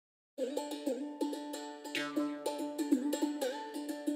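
Intro music: a quick plucked-string melody that starts a moment in, with a low bass line joining about halfway through.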